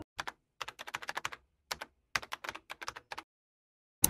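Computer keyboard typing: quick runs of sharp key clicks with short pauses between them, stopping about three and a quarter seconds in.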